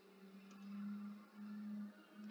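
A faint, steady low hum that breaks off and resumes a few times, over quiet background hiss.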